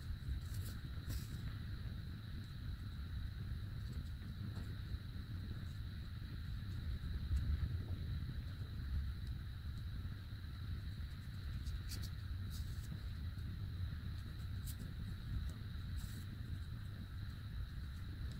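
Quiet room noise: a low rumble and a steady high-pitched whine. Over it come a few faint, brief rustles and ticks of yarn and a needle being handled as a crocheted piece is hand-sewn, two near the start and several more in the second half.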